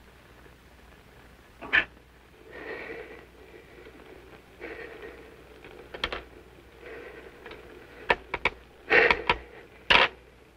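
A man in pain breathing hard, with strained gasps and groans that come every second or two. In the last two seconds come several sharp clicks and knocks.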